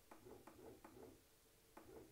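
Near silence: room tone with a few faint ticks in the first second and one more near the end.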